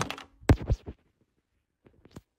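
A quick run of sharp knocks and scrapes in the first second, the loudest about half a second in, then quiet apart from a couple of faint clicks near the end.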